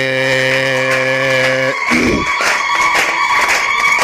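A man's voice holding one long, low chanted note into a microphone for almost two seconds. It breaks off, and hand clapping starts with a steady high-pitched tone sounding over it.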